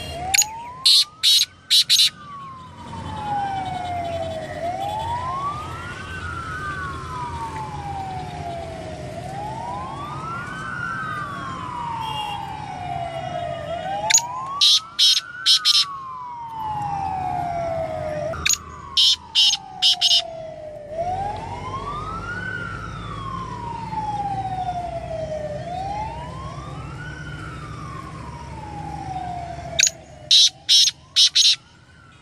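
Black francolin calling three times, each call a loud, harsh phrase of four or five quick notes. Behind it a siren wails steadily, sliding down in pitch and sweeping back up about every four to five seconds.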